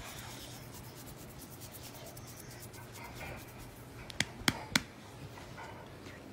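Soft rustling of blankets as dogs shift on a bed, over a low steady hum, with a quick run of four sharp clicks a little after four seconds in.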